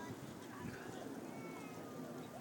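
Faint, distant voices over steady outdoor background noise, with a thin, high drawn-out call about a second and a half in.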